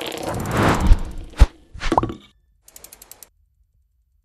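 Sound-design sting for an animated TV channel logo: a swelling whoosh that builds to a hit about a second in, a sharp impact, then a second hit with a brief ringing tone at about two seconds, and a faint rapid ticking that stops well before the end.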